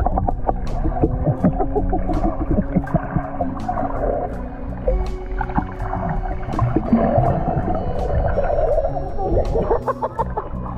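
Underwater sound picked up by a submerged action camera: a muffled low rumble with many small clicks and bubbling crackles, under a steady music track.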